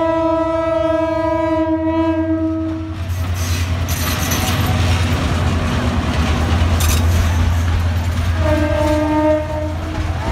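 A passing diesel locomotive's horn sounds one long blast that stops about three seconds in, over the engine's steady low rumble. Then the rumble and clatter of the train going by carry on, and a second, shorter horn blast comes near the end.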